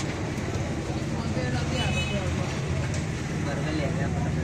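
Steady low rumble with indistinct voices over it.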